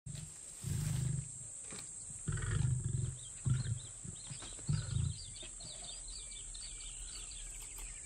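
Lion growling in four short, low bursts, with faint bird chirps behind them.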